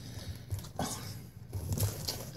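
Soft rustling and handling noises from a plastic-and-card toy package being picked up and turned over, in a few short bursts.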